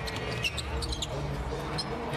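On-court sounds of an NBA game in a nearly empty arena: a basketball bouncing on the hardwood and sneakers squeaking in short, sharp chirps as players move, over a steady low arena rumble.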